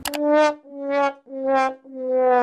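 A 'sad trombone' comedy sound effect: a short click, then three short brass notes stepping down in pitch, the long last note just beginning near the end.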